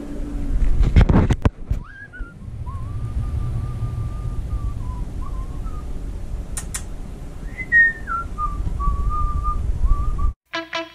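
Someone whistling long, slightly wavering single notes. A held note starts about two seconds in, and a second phrase near eight seconds starts higher and steps down. A few knocks from handling the camera come just before the whistling starts, and there is a click in the middle.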